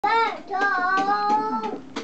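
A young baby cooing: a short falling coo, then a longer drawn-out one lasting about a second.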